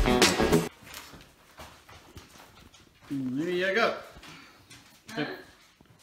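Background music that cuts off under a second in, then quiet, then one dog whine about three seconds in that rises and falls in pitch over about a second.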